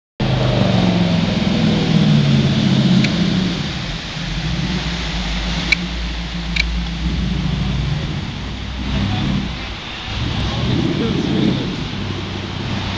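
Jet boat with twin V8 engines running below, a low steady engine rumble under a wide rush of churning water and wind noise. There are two sharp clicks just past the middle.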